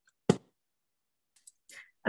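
A single short, sharp click about a third of a second in, followed by faint small noises near the end.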